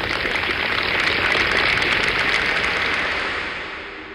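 Crowd applause, a dense spatter of clapping that swells and then fades away.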